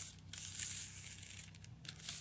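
Clear plastic tape and film crinkling as a taped macramé piece is handled, in irregular short rustles.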